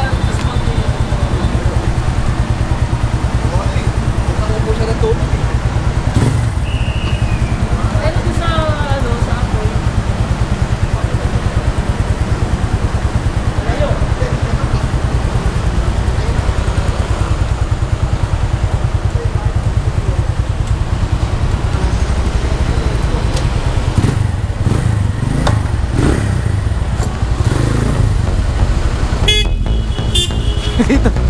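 Motorcycle engine running at low speed in slow traffic, a steady low throb.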